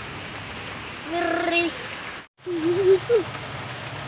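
Heavy rain falling steadily, a constant even hiss. A voice calls out briefly in the middle, and the sound cuts out for an instant about two seconds in.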